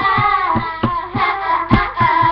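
Children singing along to a pop song with a steady beat, about three beats a second.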